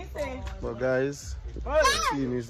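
People's voices talking and laughing, with a short high-pitched squeal near the end, the loudest moment.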